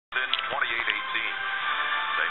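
Television broadcast audio: music with a voice over it, narrow-band and cut off in the highs, starting abruptly.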